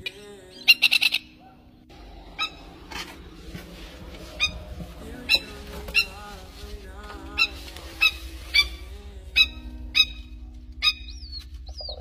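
Adult plovers giving sharp, repeated alarm calls: a quick burst of several calls just under a second in, then single calls about once a second. These are the parent birds calling over their chick in the drain.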